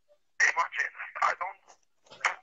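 Speech with a telephone-like sound, as over a video call, starting about half a second in after a brief silence; the words are not made out.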